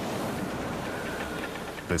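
A steady rushing noise with no speech, a faint held tone rising out of it around the middle, from the sound-effects track of a dramatised disaster.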